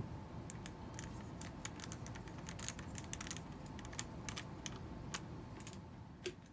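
A small screwdriver tightening a screw into a laptop's plastic bottom panel: quick, irregular light clicks and ticks, several a second, that stop about five seconds in.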